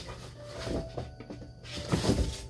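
Cardboard wine shipping box and its packing being handled as a bottle is lifted out, with soft rustles and a few light knocks.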